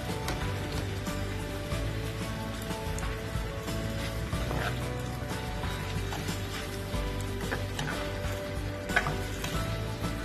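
Chicken and vegetables sizzling in a nonstick wok as they are stirred, with a few sharp clicks of the spatula against the pan, the sharpest about nine seconds in, over background music.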